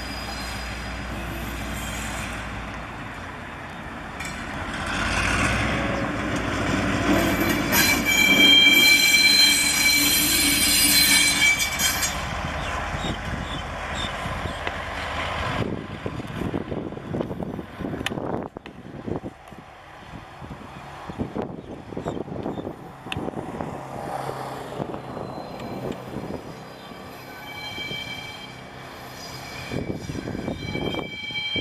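Diesel-hauled freight train running slowly into a station: a loud, high-pitched wheel squeal rises a few seconds in and lasts several seconds, then the wagons clatter over rail joints and points in a run of sharp clacks, with fainter squealing again near the end.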